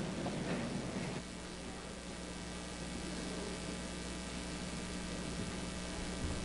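A church congregation rising from the pews: a faint rustle and shuffle, busiest in the first second, over a steady low electrical hum and hiss.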